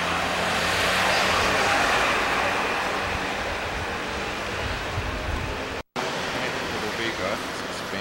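Street traffic noise, with a passing vehicle swelling louder about a second in, and faint voices of passers-by later on. The sound drops out completely for a split second about three-quarters of the way through, at an edit.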